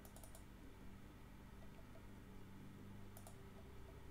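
Near silence with faint clicking at a computer: a quick run of three clicks at the start and a pair of clicks about three seconds in, over a faint low hum.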